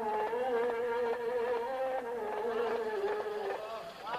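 A buzzy, reedy wind instrument plays a held, wavering melodic line, with light percussive taps underneath.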